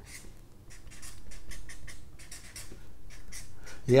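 Big thick marker stroking across sketchbook paper as block letters are written, a run of short, quick, irregular strokes.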